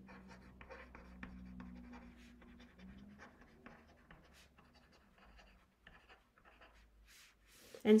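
Stylus writing on a tablet's glass screen: a run of faint, quick taps and scratches as the words are handwritten, thinning out toward the end.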